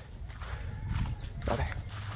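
Low, uneven wind rumble and handling noise on a phone's microphone as the phone swings down, with one short voice-like call about one and a half seconds in.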